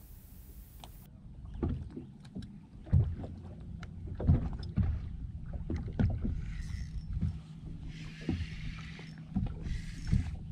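Small waves slapping irregularly against the hull of a bass boat, over a low steady hum, with a couple of stretches of hiss in the second half.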